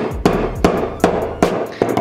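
Hammer beating a dried leg tendon against a wooden workbench, about five sharp blows at a steady pace of roughly two and a half a second, flattening and breaking up the sinew fibres.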